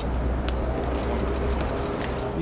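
Outdoor background noise: a steady low rumble with an even hiss, with a short run of faint sharp clicks about a second in.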